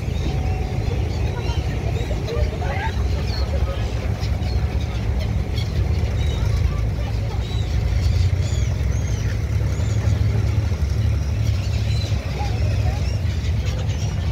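Gulls calling repeatedly in short, high cries, more often in the second half, over the steady low rumble of a boat engine.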